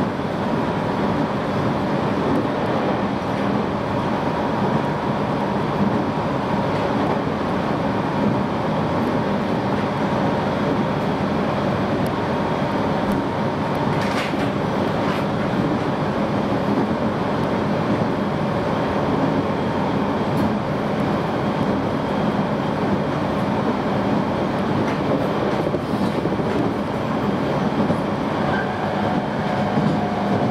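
Jōban Line electric train running at speed, heard from inside the passenger car: a steady rumble of wheels on the track with a faint steady hum, and a few faint clicks through the middle and later part.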